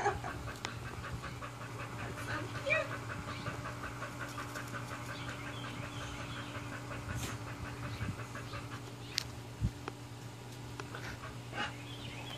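A Japanese Chin panting quickly and evenly for several seconds, out of breath from swimming and running about, over a steady low hum.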